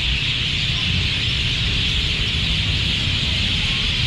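A large flock of roosting birds chattering overhead: a dense, continuous high-pitched din with no break, over a low rumble.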